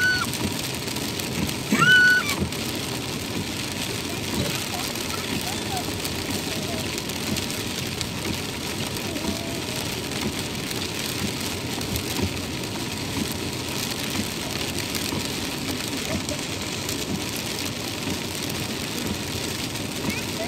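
Steady rain on a car's windscreen and roof with road noise, heard from inside the moving car, and a brief high-pitched sound about two seconds in.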